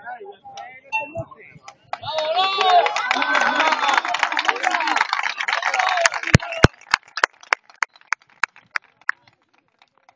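Several people's voices overlapping, then a quick, even run of sharp taps, about three a second, that fade away over a couple of seconds.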